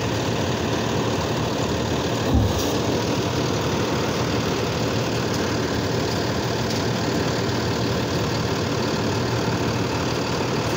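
Automated side-loader garbage truck's engine idling steadily, with one short low thump about two and a half seconds in.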